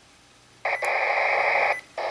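Radio scanner's speaker: faint hiss, then about a second in a harsh buzz of digital trunking data as the scanner stops on a channel, cutting off shortly before the next such signal begins at the end. These are the data noises of a trunking control channel.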